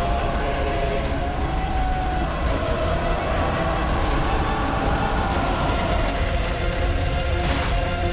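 A film soundtrack: held notes of the dramatic score over a steady, deep rumble of flames.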